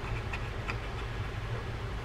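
Back of a knife blade scraping stuck paint off a small metal fishing-reel part, heard as a few light ticks and clicks in the first second over a steady low hum.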